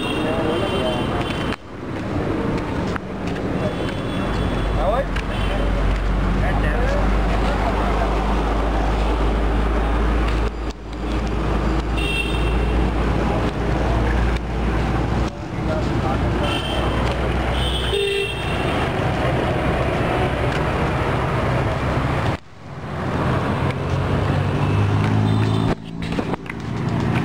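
Road traffic noise with several short car horn toots over a steady low rumble, with voices in the background; the sound breaks off abruptly a few times.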